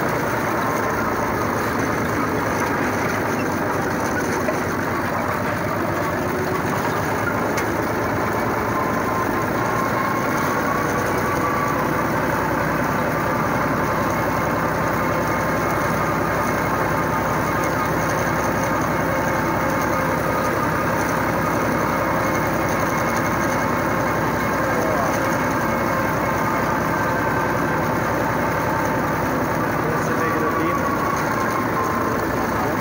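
Tractor engine running at a steady speed as the tractor drives, holding an even, unchanging pitch.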